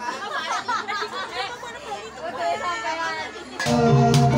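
Several people chatting, then about three and a half seconds in a Javanese gamelan ensemble comes in loudly, its bronze pot gongs and gongs struck and ringing.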